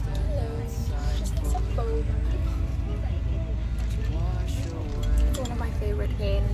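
Low, steady rumble inside a moving car's cabin, under a woman's voice and background music.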